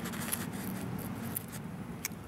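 Faint rustling and light ticks from a gloved hand handling a coin, over a low steady background hum.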